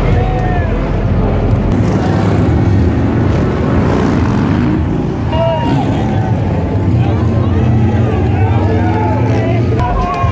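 Motorcycle engines running and revving as stunt riders ride wheelies on the track, under a crowd's hubbub and voices.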